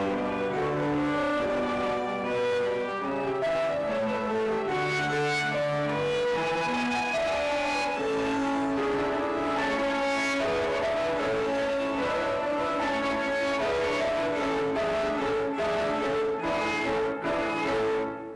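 Student piano trio of piano, violin and cello playing a trio in G major, heard played back from a video recording over the hall's sound system. There is a short drop in loudness near the end.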